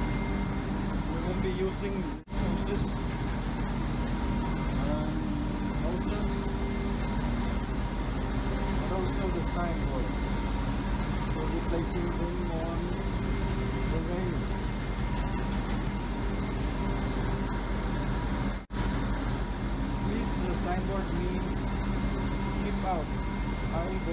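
Steady drone of a ship's machinery heard on deck, a low rumble with a few constant tones in it, and faint voices in the background. The sound cuts out briefly twice, about two seconds in and near the end.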